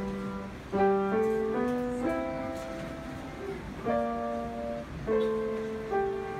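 Grand piano played at a slow tempo: single notes and chords struck one after another, each left to ring and fade before the next.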